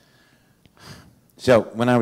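A short breath drawn in close to a handheld microphone about a second in, then a man starts speaking.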